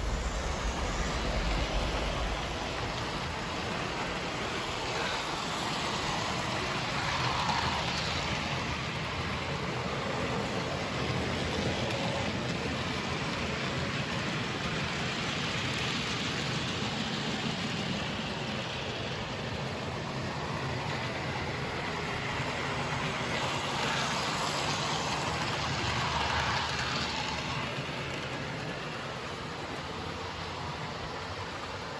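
Hornby OO gauge model diesel locomotives running round the layout: a steady whirring rumble of small electric motors and wheels on model track, swelling twice as trains pass close, about a quarter of the way in and again near the end.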